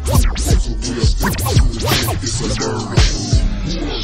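Memphis rap music, chopped DJ style: deep bass and hard drum hits with scratch-like cut-up sounds. Near the end the highs dull as the treble is filtered down.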